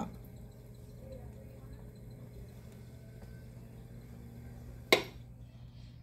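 Low steady hum of an electric pottery wheel spinning while a clay bowl's rim is smoothed with a chamois, with a single sharp click about five seconds in.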